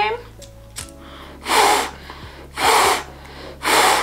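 Three forceful blows of breath out through a KN95 face mask, each a short rush of air about a second apart. The lighter flame in front of the mask stays lit: the mask is holding back the airflow.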